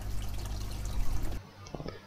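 Water pouring and trickling into an aquaponics fish tank, a steady splashing hiss that cuts off abruptly about two-thirds of the way in, leaving a few faint ticks.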